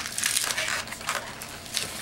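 Inflated latex 260 modelling balloon being twisted by hand into a small bubble and pinch twist, the rubber rubbing and creaking against itself in a few short, scratchy scrapes.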